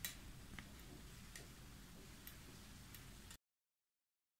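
Near silence with a few faint, irregular clicks from crocheting with a hook; the sound cuts off to dead silence about three and a half seconds in.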